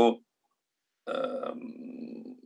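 A man's voice over a video call: the tail of a word, a second of dead silence, then a drawn-out hesitation sound, a held "eee" lasting about a second and a half, as he searches for his next word.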